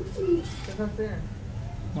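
Domestic pigeons cooing: a few short coos that rise and fall in pitch.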